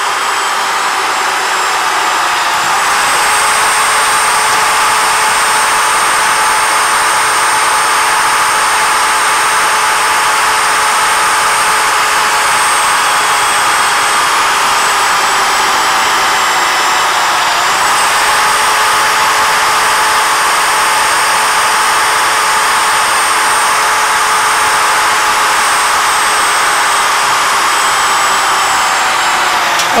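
Electric drill motor on a CNC tube cutter's drill head running steadily at full speed while its twist bit is fed slowly down into steel tube. The loud whine sags slightly in pitch twice, about two seconds in and again about seventeen seconds in.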